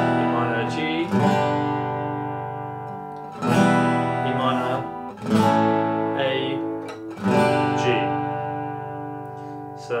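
Steel-string acoustic guitar strumming the chorus chords E minor, A7 and G, about five chords in all, each struck and left to ring and fade.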